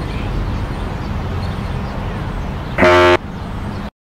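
A low rumbling drone, with one short, loud horn-like honk almost three seconds in. The sound then cuts off abruptly just before the end.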